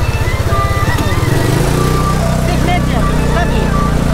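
Engine of an open-sided taxi running as it drives, its note shifting about a second and a half in.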